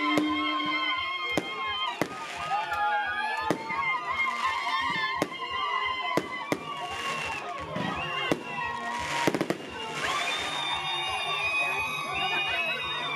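Fireworks going off in a string of sharp bangs, roughly one every second or two, over shouting and chatter from a crowd of onlookers.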